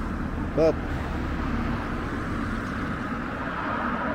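Steady outdoor street noise with the hum of road traffic.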